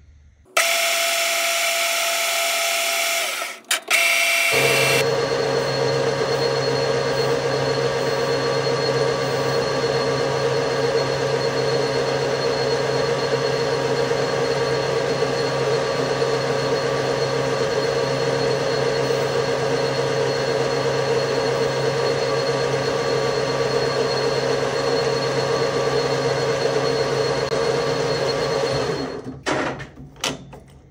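Metal lathe running and turning a small chamfer on a machined part. It starts suddenly, breaks off briefly after a few seconds, then runs as a steady hum with a constant low tone until it stops near the end.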